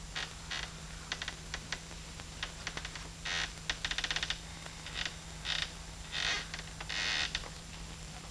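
Scuffing, scraping and light clicks of a person crawling in the dark, with a quick run of ticks about four seconds in and longer scrapes near the end. A steady low hum from the old film soundtrack runs underneath.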